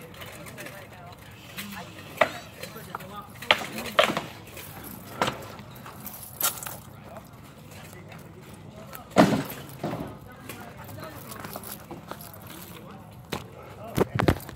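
Rattan swords knocking against shields and armour in sparring: sharp cracks at irregular intervals, the loudest about nine seconds in, over low talk and a laugh.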